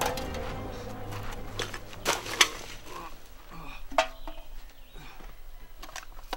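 Music fades out over the first second or two, then a few sharp clinks and rattles of empty aluminium beer cans being knocked about on the ground, the loudest about two and a half seconds in.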